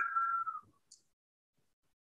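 The tail of a man's word, with a faint, steady, whistle-like high tone under it that fades out about half a second in, then dead silence.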